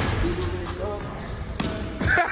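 A basketball bouncing on a gym's hardwood floor, with a few separate hits, mixed with people's voices.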